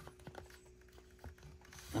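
Cardboard slide strip being pushed into the slot of a plastic Chad Valley Give A Show toy slide projector: a few faint clicks and light scrapes.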